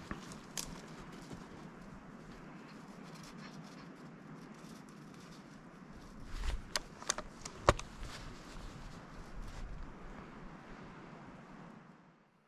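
Faint rustling with a few sharp clicks or snaps a little past the middle, the loudest about two-thirds of the way through.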